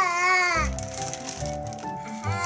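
A toddler's high, wavering voice for about half a second, then background music with held tones and a low beat.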